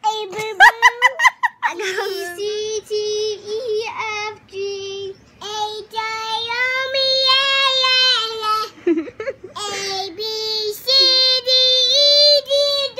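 A young child singing in long, held notes with no clear words, after a few short, high-pitched yelps at the start.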